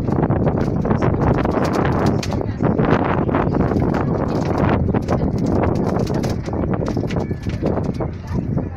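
Miniature railway train pulling away and running along the track: a dense, rhythmic clatter of wheels over the rails, over a steady low rumble that comes in suddenly at the start.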